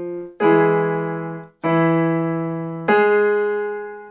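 Electronic keyboard with a piano sound playing three chords, about a second apart, each struck and then fading. This is the accompaniment for a vocal range exercise.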